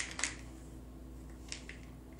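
A jar of fish oil capsules being opened by hand: a short rustle near the start, then a couple of faint clicks about one and a half seconds in.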